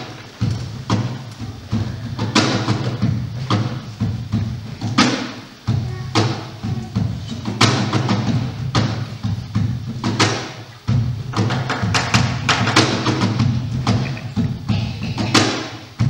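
Live music: a low didgeridoo drone that breaks off briefly twice, about five and a half and eleven seconds in, under frequent hand-struck percussion hits.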